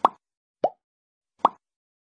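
Three short cartoon pop sound effects from an animated subscribe end screen, the middle one lower in pitch, as its buttons pop into view.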